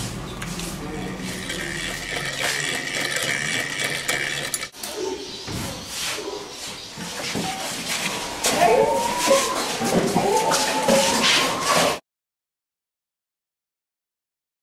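Indistinct voices over background room noise, the voices plainer and louder in the last few seconds, before the sound cuts off to silence near the end.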